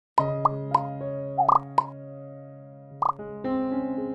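Short intro jingle of held chords, punctuated by cartoon pop sound effects: a quick run of pops in the first two seconds and one more about three seconds in.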